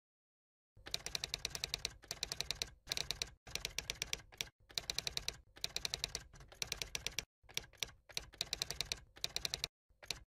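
Typing sound effect: quick runs of key clicks with short breaks between them, starting about a second in, as text is typed out letter by letter.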